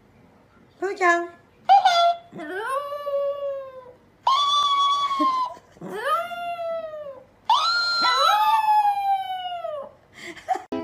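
Chihuahua howling: two short yips about a second in, then four long howls, each rising and then slowly falling in pitch. A second howl overlaps the last one.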